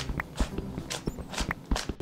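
A 3x3 Rubik's cube being turned by hand: an irregular run of sharp clicks, about seven in two seconds, as the layers are turned.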